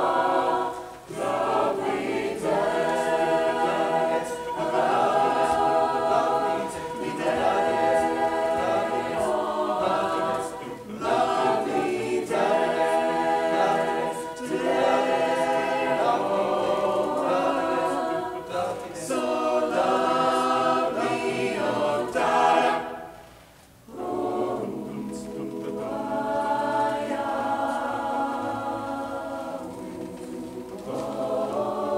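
Mixed-voice choir singing sustained chords in phrases of a few seconds each, with a brief break about three-quarters of the way through before the voices come back in.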